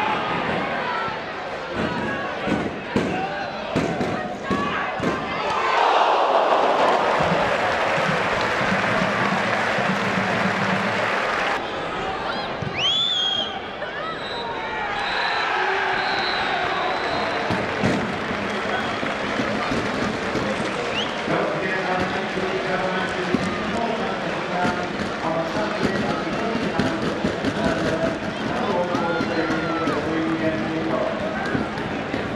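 Pitch-side sound at a football match: shouting voices and crowd noise, with a few thuds of the ball being kicked in the first seconds and a swell of crowd noise about six seconds in.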